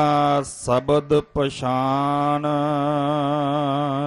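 A man's voice chanting a line of Gurbani in the sung recitation of the Hukamnama: a few short syllables, then one long held note with a slight waver that stops at the end.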